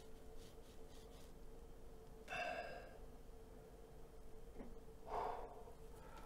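Two soft sighing breaths from a man, one about two seconds in and one near the end, over a faint steady hum.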